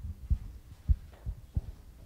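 About four dull, low thumps over a low hum, the second the loudest: bumps and handling noise on the lectern picked up by its microphone.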